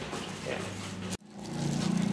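The sound cuts off suddenly about a second in, then a small engine runs at a steady idle.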